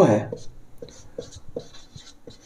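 A man's spoken word ends at the start, then a marker writes on a whiteboard in a run of short, separate strokes, about two or three a second.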